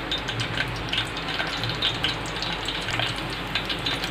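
Crushed garlic cloves sizzling in hot oil in a metal pot: a steady hiss with small crackles.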